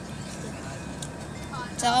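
Steady engine and road noise heard from inside the cabin of a moving bus. A girl's voice starts near the end.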